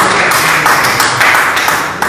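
A short burst of hand clapping from a small group of people, loud and even throughout.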